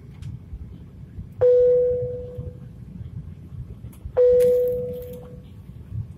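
Two single cabin chimes in an Airbus A350 airliner, about three seconds apart, each a clear tone that rings out and fades over about a second, over a steady low cabin rumble.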